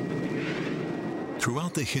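Steady roar of a jet fighter in flight, with a brief rushing swell about half a second in. A man starts speaking near the end.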